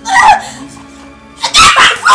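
A woman crying out in distress: a short wailing cry at the start, then a louder scream in the last half-second, over steady background music.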